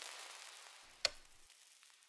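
Near silence after the sound before it fades out, broken by a single short click about a second in.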